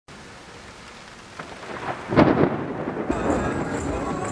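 Steady rain hiss, then a loud thunderclap about two seconds in that rumbles away. A little after three seconds the sound cuts abruptly to different outdoor sound.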